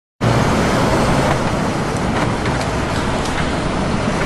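A steady, loud outdoor noise like passing road traffic, cutting in suddenly just after the start and holding level, with a few faint clicks.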